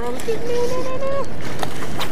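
A person's drawn-out exclamation of 'oh' in the first second, over a steady rushing noise.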